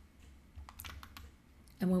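A short run of quiet clicks from computer use, several in quick succession about half a second to a second in. A woman starts speaking near the end.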